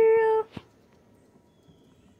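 A woman's high, sing-song coaxing call held on one note, stopping about half a second in, followed by a single small click and then quiet.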